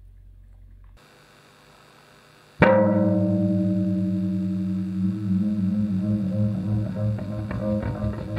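Amplified Squier Classic Vibe '60s Custom Telecaster electric guitar. After a low hum that stops about a second in, a sudden loud struck sound about two and a half seconds in rings on as a low, sustained chord-like tone and slowly fades. From about halfway on it pulses in a fast, uneven rhythm as spinning neodymium magnets set the strings vibrating.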